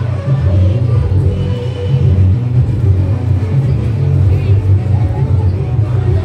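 Loud dance music with a heavy bass beat, accompanying a group dance.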